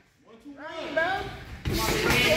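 Indistinct voices in a large room, after a brief drop to silence at the start; the sound turns suddenly louder and fuller near the end.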